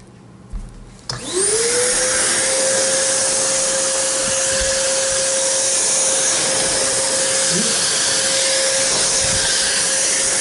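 Hoover Constellation S3345 (Maytag Satellite) stainless-steel floating canister vacuum switched on with a click about a second in. Its motor spins up in a quick rising whine, then runs steadily with a constant tone over a strong rush of air.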